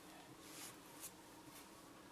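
Near silence with a faint steady hum, broken by soft, brief rubbing noises about half a second and a second in, from fingers handling and rolling a small piece of modelling clay.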